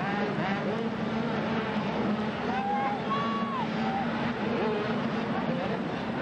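Several 80cc two-stroke mini motocross bikes racing, their engines revving up and back down through the turns, with voices mixed into a steady background hum.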